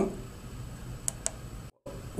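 Two light clicks about a fifth of a second apart from the ICS push button on a PMA450A aircraft audio panel being pressed and released, against quiet room tone. The sound drops out completely for a moment near the end.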